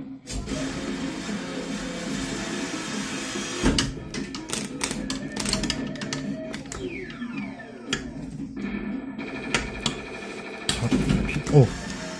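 Arcade claw machine's electronic music and sound effects, with bursts of sharp clicks and a tone sliding downward partway through.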